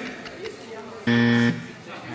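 A quiz buzzer sounds once, about a second in: a loud, steady buzz lasting about half a second.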